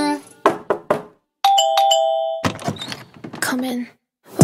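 A two-tone doorbell chime, a ding-dong with the second note lower, rings out in a break in the song, followed by a short stretch of a spoken voice.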